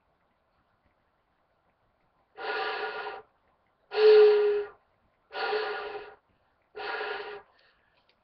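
Four short breaths blown into an end-blown flute held against the lower lip. The second, about four seconds in, is the loudest and sounds a clear steady note. The others come out mostly as breathy, airy tone, typical of the mouthpiece sitting too low towards the chin so the breath misses the splitting edge.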